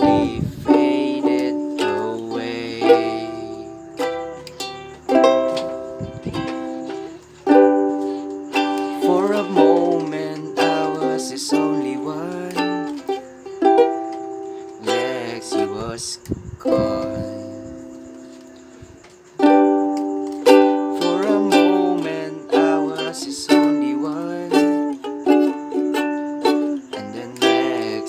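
Ukulele strummed in a steady down-and-up pattern through the chords G, D, Em and C. Around the middle, one chord is left to ring and fade for about three seconds before the strumming starts again.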